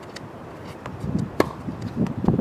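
A tennis racket strikes a ball once, a sharp crack about one and a half seconds in. A fainter tick comes about half a second before it.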